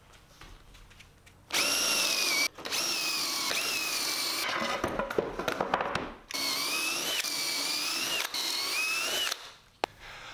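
Cordless drill spinning a stepped bit through a Kreg pocket-hole jig into 3/4-inch plywood to bore pocket holes. It starts about a second and a half in and runs in three bursts of one to four seconds each, its whine dipping and rising in pitch as the bit cuts.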